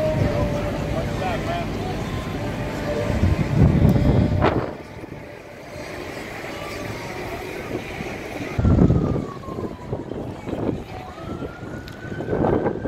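Wind gusts buffeting the microphone over the hubbub of a large outdoor crowd. From about two-thirds of the way through, a siren wails, falling and then rising in pitch.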